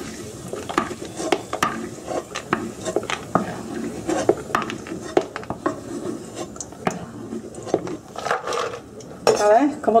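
A metal spoon scraping and clinking repeatedly against a frying pan as fried almonds are scooped out of hot oil and put into a blender jar, with the oil sizzling lightly underneath.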